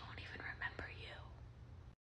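A faint whispered voice over a low steady hum.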